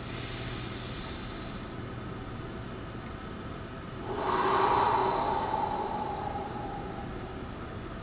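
A person breathing slowly and deliberately during a breathing exercise: a faint breath in at the start, then about four seconds in a long audible exhale that fades out over about three seconds.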